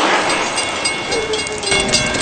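A train passing close by: a loud, steady rush of rail noise, with high, steady ringing tones coming in near the end.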